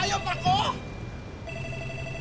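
Mobile phone ringing: a steady electronic ringtone starting about one and a half seconds in, after a brief voice at the start.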